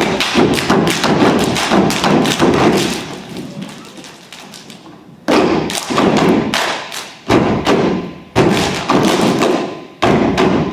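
Step team stomping and clapping in a fast rhythm for about three seconds, then dying away. Loud stomping breaks out again suddenly about five seconds in and twice more near seven and eight seconds, each burst trailing off.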